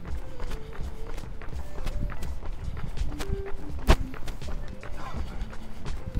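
Running footsteps of two joggers landing rhythmically on asphalt, with soft background music of a few held notes underneath. One sharp tap about four seconds in.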